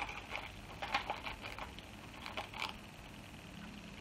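A metal teaspoon scooping powdered gelatine out of its small packet: a few faint scattered ticks and scrapes.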